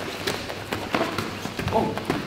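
A quick string of light knocks and thuds: boxing gloves slapping against gloves and arms, and feet shuffling on the padded training mat during a punching-and-parrying drill.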